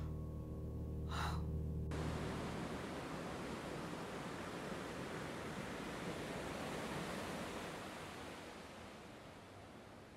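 A woman's sharp gasp over a held low music chord, then, starting suddenly about two seconds in, the steady wash of ocean surf, which fades away over the last couple of seconds.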